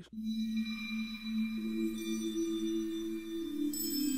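Omnisphere software synthesizer playing the Omniverse bell patch 'She Surreal', a hybrid acoustic/analog bell, on keys: long sustained bell notes with high ringing overtones. A second, higher note joins about one and a half seconds in, and more notes come in near the end.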